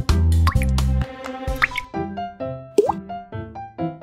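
Upbeat children's background music, with the heavy bass dropping out about a second in, overlaid with a few short rising 'bloop' sound effects.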